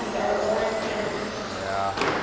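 Electric 1/10-scale touring cars running laps together, their brushless motors whining up and down in pitch as they accelerate and brake, heard in a large echoing hall.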